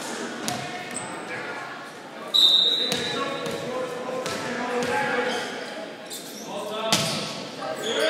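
A referee's whistle gives one short, loud blast about two seconds in, over players' and spectators' voices echoing in a large gym. A few thumps of a ball are heard, the sharpest near the end.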